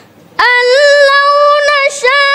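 Quran recitation in the measured tartil style: a single high voice comes in about half a second in and holds one long, steady note with slight wavering. It is broken near the end by a short hissing consonant.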